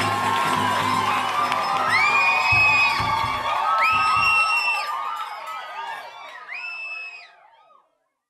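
A crowd singing and cheering, with high rising whoops each held for about a second, three times. The sound fades out over the last few seconds.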